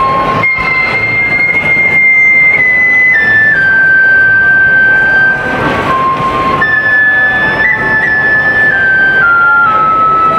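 Shinobue, a Japanese bamboo transverse flute, playing a slow solo melody of long held high notes through a stage microphone. Each phrase steps down note by note, with a brief dip to a lower note near the middle before the line rises again.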